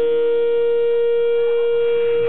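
A single sustained electric guitar tone, held at one steady pitch through the amplifier like a feedback drone.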